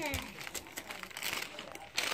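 Gift wrapping paper crinkling and rustling irregularly as it is pulled open by hand.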